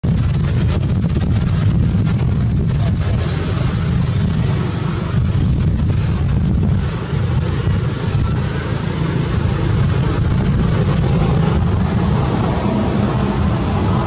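A loud, steady low rumble with a hiss above it, dipping briefly about halfway through. No animal calls or voices stand out.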